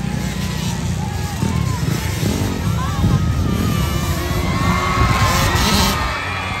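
Engines of small 50/65cc motocross dirt bikes revving up and down as they race, rising near the end, over a low rumble and a crowd's voices.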